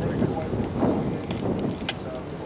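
Wind buffeting the microphone in a dense low rumble, with people talking in the background and a sharp click near the end.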